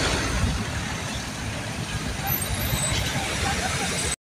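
Road traffic: cars driving by on a street, with a steady low rumble and a wash of noise.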